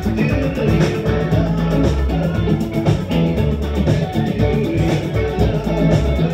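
Live rock band playing: electric guitar and bass guitar over a steady beat.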